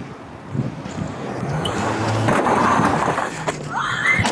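Rattling, rustling clatter of a body-worn police camera jostled as its wearer runs, building from about half a second in and staying loud.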